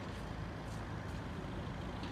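Steady low rumble of an idling vehicle engine under outdoor background noise.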